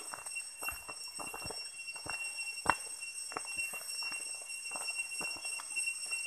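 Footsteps of several people walking on a forest trail, with irregular light knocks and rustles from bags and gear, over a steady faint high whine.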